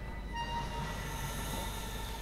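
A single high, sustained instrumental tone with a bright stack of overtones, entering about a third of a second in and fading near the end, over a low steady room rumble.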